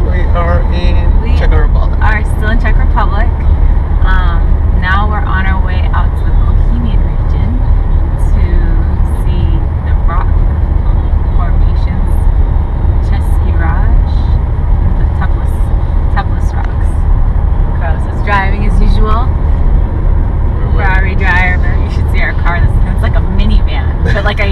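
Steady low rumble of a car driving, heard inside the cabin, with voices talking and laughing over it at intervals.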